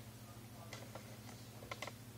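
Faint light clicks, about five scattered through two seconds, over a steady low hum.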